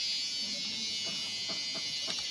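A steady, high-pitched buzzing chorus of forest insects, with a few faint short clicks or calls in the second half.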